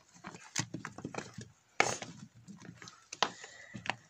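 Loose stones and rubble being handled and shifted by hand, giving a run of irregular clacks and scrapes, the sharpest knock about two seconds in.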